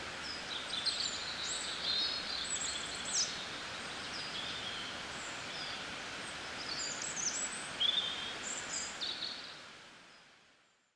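Outdoor ambience of songbirds chirping and calling again and again over a steady background hiss, fading out near the end.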